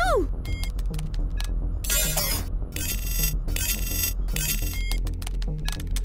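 Suspenseful cartoon soundtrack: a low drone with a slow pulse under it, with short electronic beeps and three bursts of crackling electronic static, loudest between about two and four and a half seconds in.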